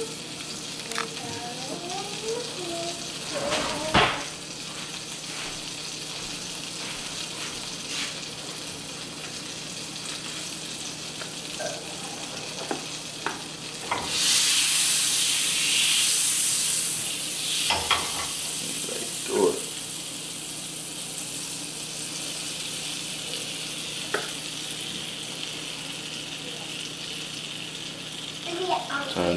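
Butter sizzling in a small hot skillet, a steady hiss. About 14 seconds in, pancake batter is poured into the pan and the sizzle jumps louder for a few seconds before settling back to a steady sizzle under the cooking pancake. A few light knocks of utensils and pans come through.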